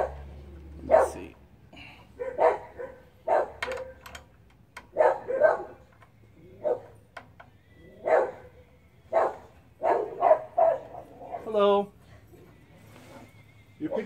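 A dog barking repeatedly, about one bark a second, at the mail carrier's arrival.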